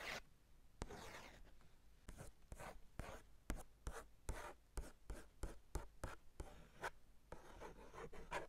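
Fingertips and fingernails tracing over a sketchbook's paper page in short, uneven strokes, about two a second, with a longer sweep about a second in. Faint and very close, picked up by a tiny microphone lying on the page.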